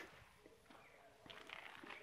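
Near silence: faint outdoor background, with a few soft scuffs in the second half.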